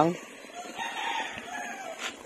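A rooster crowing once, faintly: one long held call starting about half a second in and dying away just before the talking resumes.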